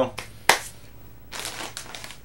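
A crinkly snack bag being handled and moved, rustling, with a sharp click about half a second in.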